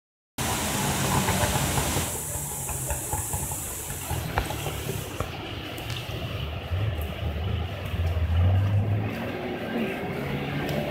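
Rushing water of a river rapid, with a boat's outboard motor running under it; the motor's low hum grows louder between about seven and nine seconds in.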